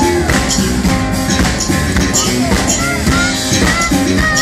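Live blues-rock band playing: acoustic guitar strummed over electric bass and drums, with a steady beat and bent notes.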